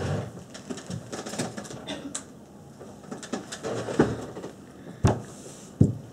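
Handling noises as a water bottle is fetched: rustling and small clicks, then two sharp knocks near the end as the bottle is set down on a table.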